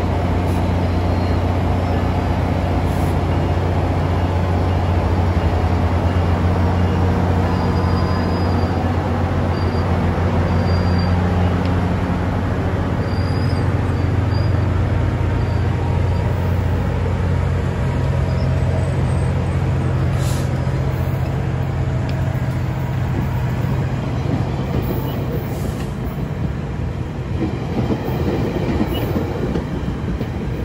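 A GO Transit diesel locomotive's engine hums steadily and low as the train passes close by, then fades after about 24 seconds. Its bilevel passenger coaches roll past with steady wheel-on-rail noise, with a few sharp clicks near the end.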